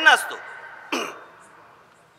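A man's voice through a public-address system: a spoken word trails off into a fading ring of echo, then about a second in comes a short throat-clear into the microphone.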